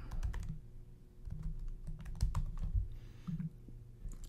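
Typing on a computer keyboard: quick keystrokes in a few irregular bursts as a short phrase is typed.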